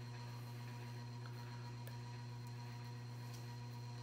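Steady low electrical hum with evenly spaced overtones and a couple of faint ticks.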